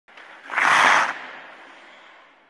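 Short whoosh sound effect for a title-logo intro: a noisy rush of about half a second that trails off quickly.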